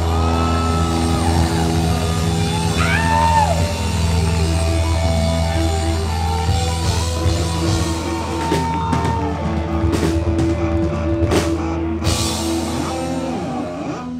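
Live rock band playing loud: electric guitars, bass, keyboard and drum kit, with several cymbal crashes in the second half.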